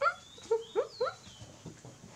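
A baby monkey calling: a quick run of about four short, high, upward-sliding squeals in the first second, with thin whistly tones above them, then a fainter squeal near the end.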